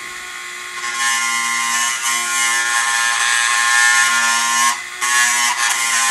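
Dremel rotary tool running with a steady whine, its bit grinding plastic off the upper tooth of a holster slide lock from about a second in. The grinding breaks off briefly near five seconds, then goes on.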